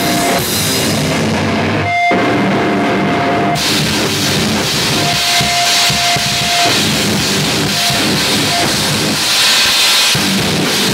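Heavy metal band playing live: distorted electric guitar and a drum kit with cymbals. About two seconds in the band stops for an instant and comes back in without cymbals, and the cymbals return about a second and a half later.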